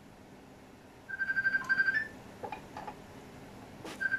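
Electronic beeping: a rapid string of short beeps at one pitch for about a second, ending on a slightly higher beep, followed by a few light clicks and a sharper click near the end.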